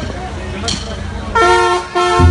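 Live crowd noise, then about a second and a half in a banda's brass section comes in with a loud held chord.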